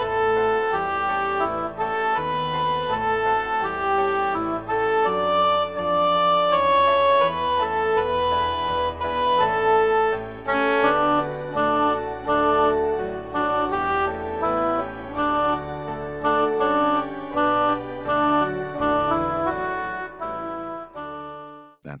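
Choral rehearsal-track music: the alto vocal line played as an oboe sound over organ and piano accompaniment, in steady sustained notes, stopping just before the end.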